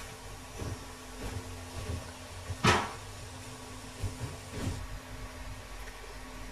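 Metal spoon knocking and scraping in a pan of fish curry, a few soft knocks and one louder sharp clunk about two and a half seconds in, over a steady low hum.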